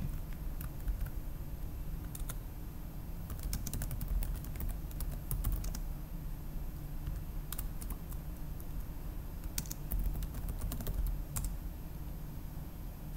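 Computer keyboard typing: irregular runs of keystrokes with short pauses between them, over a faint steady low hum.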